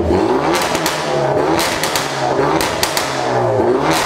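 Hyundai i30N's turbocharged 2.0-litre four-cylinder engine being revved repeatedly through its new downpipe and exhaust, each rev climbing and falling about once a second, with sharp cracks between revs. The new exhaust sounds 'absolutely carnage'.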